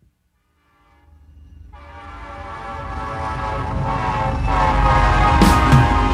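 Train horn fading in from silence about a second in and growing steadily louder as the train approaches. Drum hits come in near the end.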